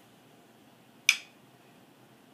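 A single sharp click about a second in, against quiet room tone.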